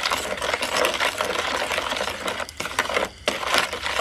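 A spoon stirring a liquid dressing in a plastic bowl, scraping and clicking quickly and continuously against the bowl, with two brief pauses in the second half.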